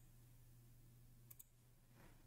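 Near silence: a faint steady low hum with a single faint mouse click about a second and a half in.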